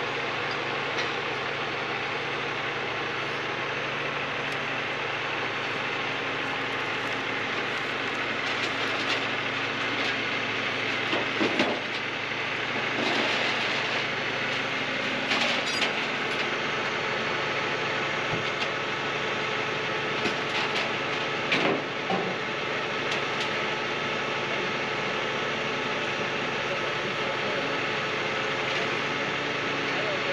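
Heavy tow truck's diesel engine idling steadily, with a few short knocks or clanks from the crew working on the recovered minivan.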